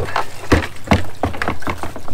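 A handful of knocks and clatters from a plastic backpack sprayer being set down on the ground and handled.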